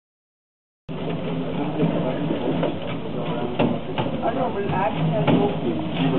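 Silent for about the first second, then sound cuts in: several people talking over each other above the steady running hum of a grape crusher-destemmer, with scattered clicks and knocks.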